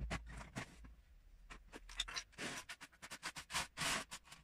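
Loose plastic Lego bricks clicking and rattling as a hand rummages through them in a plastic storage tub, in a quick run of clicks with a few louder shuffling rattles in the second half.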